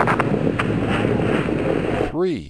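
Low, steady rumbling roar of the Space Shuttle Challenger's launch, with a few crackles through it.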